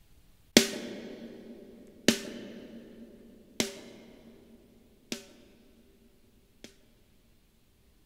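A snare drum hitting about every second and a half, each hit followed by a long reverb tail. The hits get steadily quieter and their reverb fades with them as the track fader is pulled down. The reverb is on a post-fader send, so it follows the dry level.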